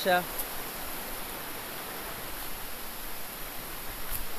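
A shallow rocky river rushing over stones: a steady hiss of running water.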